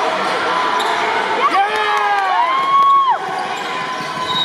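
Basketball bouncing on a hardwood gym floor over steady gym chatter, with a cluster of high sliding squeals near the middle.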